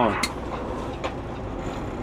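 Peterbilt 389 glider's diesel engine running low and steady, heard from inside the cab, with a short click about a quarter second in.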